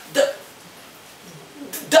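A woman's voice: a short spoken syllable, then a pause of quiet room tone broken near the end by a brief sharp vocal noise just before her speech resumes.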